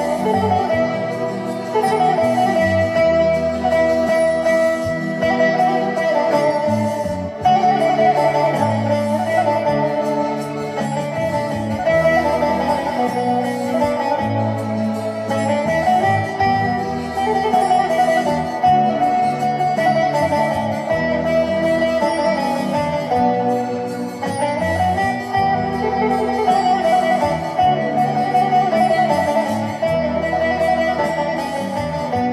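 Bağlama (Turkish long-necked saz) playing an instrumental melody: a continuous line of quickly plucked notes over lower sustained notes.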